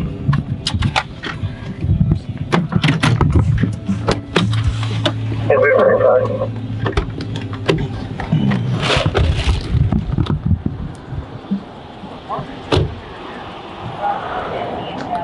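Inside a slowly moving car: a series of clicks and knocks from handling and the car's interior, over a low steady hum for a few seconds in the middle, with indistinct voices.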